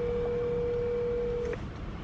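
Telephone ringback tone over a smartphone's speakerphone: one steady ring that stops about one and a half seconds in, while the outgoing call rings unanswered at the other end.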